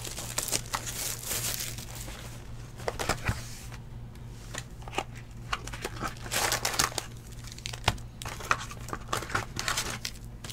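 Plastic wrapping and foil trading-card packs crinkling in the hands, with irregular rustles and small clicks, as a hobby box of baseball cards is opened and its packs handled.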